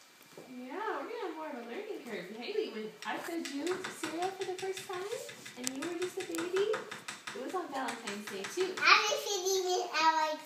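A young child's voice babbling without words, rising and falling in pitch, with a louder, higher squeal about nine seconds in.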